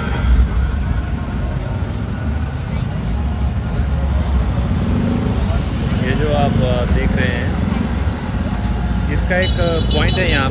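Busy street traffic: vehicle engines keep up a steady low rumble, with people's voices coming through about six seconds in and again near the end.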